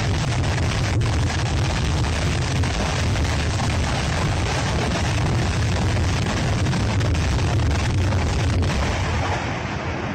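Artillery barrage: a continuous rumble and crackle of many explosions running together, with no pause.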